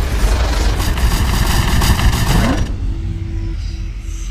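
Logo-intro sound effects: a loud, dense rush of noise over a deep rumble, with a short rising sweep. About two and a half seconds in it drops away to a steady low tone.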